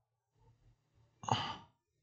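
A single short sigh or exhaled breath from a person close to the microphone, about a second in, over a faint low hum.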